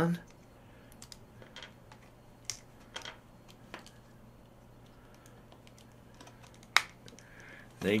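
Small plastic clicks and taps as an action-figure head is worked onto a 3D-printed ball neck joint, ending with one sharper click near the end as the head pops into place.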